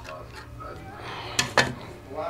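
Two sharp clicks about a fifth of a second apart, about one and a half seconds in, from a stack of trading cards being worked out of a clear plastic holder.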